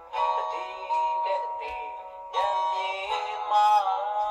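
A man singing a Myanmar pop song with instrumental backing, played back from a computer's speakers into the room.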